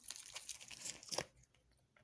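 Tarot cards being shuffled and handled in the hands, a quick papery rustle and flutter of the card stock that stops about a second and a half in.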